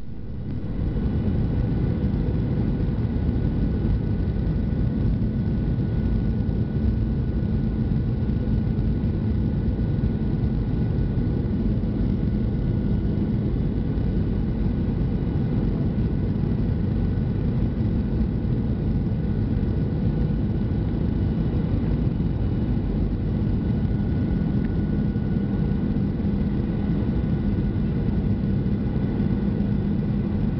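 Steady cabin noise of a Boeing 737-700 on descent for landing: its CFM56 turbofan engines and rushing airflow make a dense, even noise with a steady low hum.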